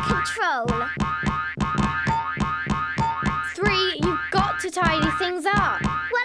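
Cartoon 'boing' sound effects of a bouncing ball, springy pitch glides that sweep and wobble several times, over background music with a steady beat.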